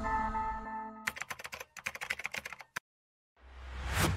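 Title-sequence music and sound effects: a held chord fades out, then a rapid run of sharp clicks follows. After a brief silence a swell of noise rises.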